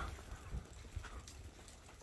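Quiet outdoor background with a few faint taps, about half a second and a second in.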